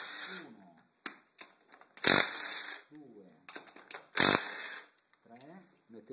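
Cordless impact driver running in three short bursts, at the start, about two seconds in and about four seconds in, loosening the wheel nuts of an ATV wheel.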